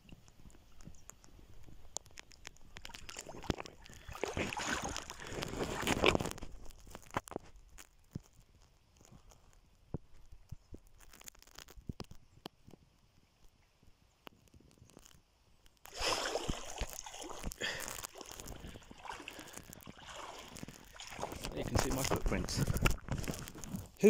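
Shallow lake water sloshing and splashing around a person's legs as he wades toward the shore, in two stretches with a quieter gap in the middle.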